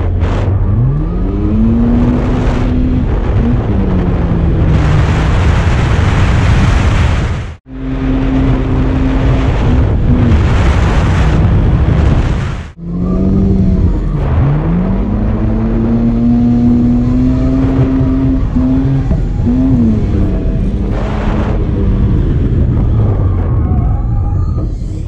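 Drift car's engine revving hard, its pitch climbing, holding high and dropping again and again as the throttle is worked through the slides, over a steady rush of tyre and wind noise. The sound breaks off abruptly twice along the way.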